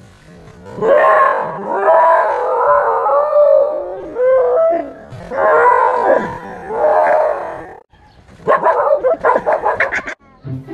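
A dog howling in long, wavering cries, alarmed by a fake tiger, then a quick run of short, sharp barks near the end.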